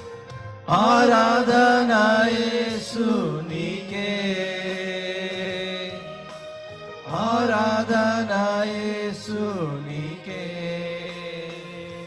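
Male vocals singing a Telugu Christian worship song over a sustained instrumental backing. Two long, ornamented sung phrases come about a second in and about seven seconds in, each falling away at its end.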